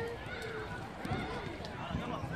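Several children's voices calling and shouting across a football pitch, overlapping, with a few short knocks of footballs being kicked.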